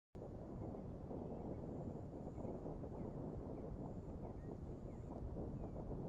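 Faint, steady outdoor wind rumble on the microphone, with a few faint, brief chirps now and then.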